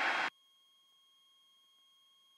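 A voice cuts off in the first instant, then near silence on the cockpit audio feed, with only a faint steady high electronic whine and no engine noise.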